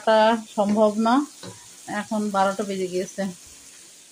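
A woman's voice speaking in two short spells, over the faint sizzle and bubbling of tripe cooking in a wide pot, stirred with a wooden spoon.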